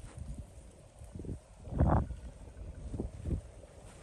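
Wind buffeting the microphone in irregular low rumbling gusts, with the strongest gust about two seconds in.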